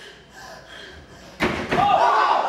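A sudden loud slam about a second and a half in, a few hard hits in quick succession with a short ring-out, after a quieter pause.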